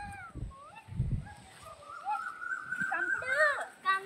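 A Shih Tzu whining: several short high-pitched whines that rise and fall, then a longer drawn-out whine held for over a second before it breaks into more short whines near the end.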